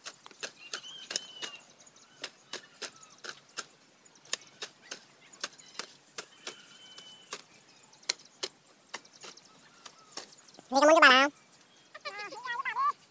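A metal garden hoe chopping into dry soil between rows of young corn: short, sharp strikes, about two a second. Near the end a loud, wavering cry cuts in over the hoeing.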